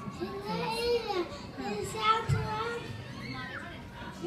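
Young children's voices chattering and calling out at once, overlapping and high-pitched.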